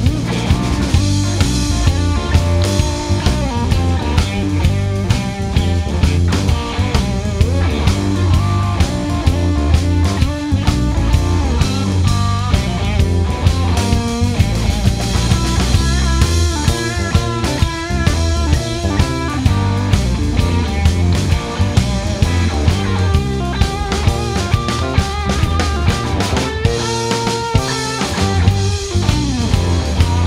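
Live blues-rock power trio playing an instrumental passage: electric guitar playing bending lead lines over bass guitar and a drum kit keeping a steady beat, with no singing.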